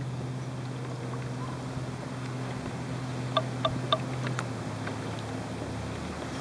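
A small boat motor running with a steady low hum over the wash of the water, dropping a little in pitch past the middle. Three quick, sharp clinks come close together about halfway through.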